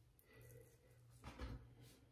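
Near silence: a faint steady low hum with soft rustling from hands handling a curly lace-front wig at the hairline, the louder rustle about one and a half seconds in.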